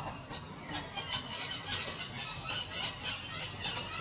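Short, high-pitched animal squeals or chirps repeated about three times a second, starting under a second in.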